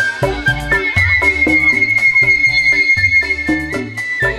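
Organ dangdut band music: a high flute-like melody holds one long note over a steady drum and bass beat.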